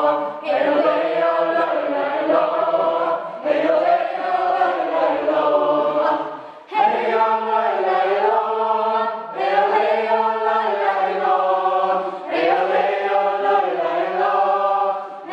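A small group of men and women singing a joik together on meaningless syllables, in long held phrases of about three seconds each with short breaths between.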